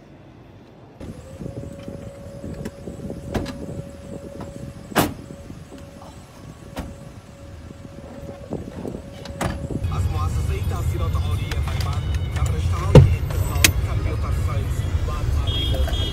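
A car door and the running engine of a large SUV, heard from inside the cabin: a steady low engine rumble sets in about ten seconds in, and a sharp door slam comes about three seconds later. Before that there is a steady hum with several sharp knocks.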